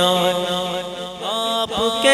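Male voice singing an Urdu naat, holding a long steady note that fades about a second in, then starting a new phrase near the end, over a steady low drone.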